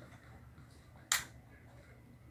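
A single sharp click or snap about a second in, over faint room tone.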